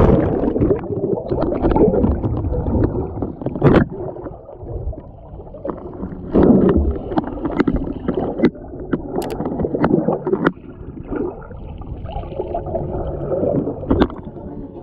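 Muffled underwater sound of seawater churning and bubbling around a submerged action camera, with a few sharp clicks and knocks.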